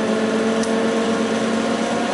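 Electric radiator cooling fan driven by a PWM fan controller, running at low speed with a steady hum made of several tones.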